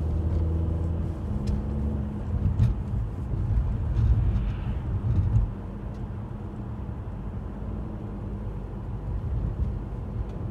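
Car driving, heard from inside the cabin. A steady engine hum gives way about two seconds in to a rougher, louder rumble of engine and tyres for a few seconds. It then settles into a quieter, steady road rumble.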